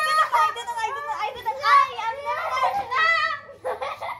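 Young girls' high-pitched, excited voices, chattering without clear words; they drop away briefly near the end.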